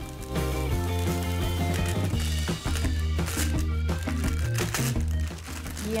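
Background music over the crinkle of parchment paper being unrolled, with small cracks as the thin sheet of set chocolate between the papers breaks into shards.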